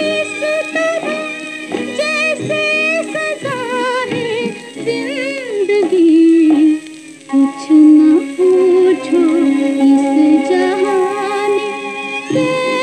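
A 1950s Hindi film song playing from a 78 rpm record: a woman singing with vibrato over instrumental accompaniment.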